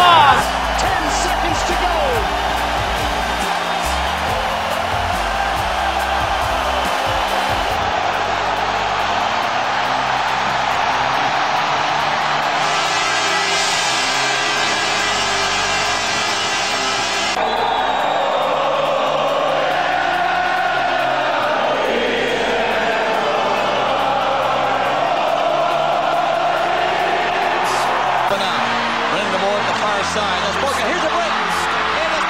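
Song playing as background music, mixed with arena crowd noise from hockey game footage, at a steady level throughout.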